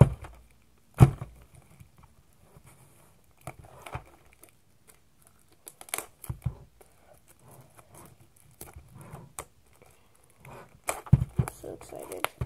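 Plastic packaging being picked at and torn by hand, in scattered short crinkles and rips. Two sharp knocks about a second apart near the start, and a busier run of tearing near the end.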